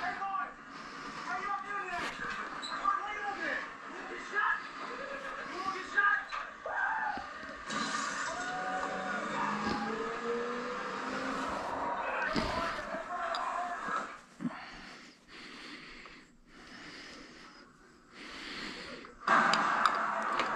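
Indistinct background voices, not the mechanic's own narration, with a few light knocks and clicks of engine parts being handled. The voices die away about two-thirds of the way through, leaving a quieter stretch with occasional knocks.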